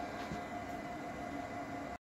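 Steady whir of running appliance fans with a faint steady hum, cut off abruptly at the very end.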